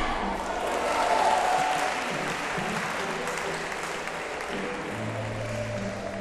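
Audience applauding in a large hall, loudest about a second in and then settling to a steady patter, with music playing faintly underneath that becomes clearer near the end.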